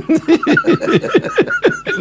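Two men laughing hard into close studio microphones, a fast run of short chuckles.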